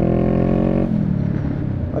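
Honda Rebel 500's parallel-twin engine, just knocked into neutral by mistake, holding a steady, slightly rising note that drops to a lower pitch about a second in.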